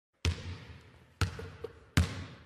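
A basketball bouncing three times, each bounce a sharp smack that rings out briefly, the third coming a little sooner after the second than the second after the first.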